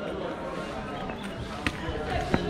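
Indistinct voices of people talking in the background, with one sharp click near the end.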